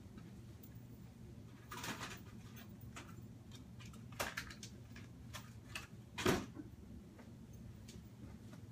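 Someone rummaging off to the side for a phone case: a few scattered knocks, clicks and rustles, the loudest about six seconds in, over a low steady hum.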